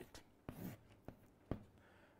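Faint writing on a board in a small room: three light taps or strokes, with quiet room tone between them.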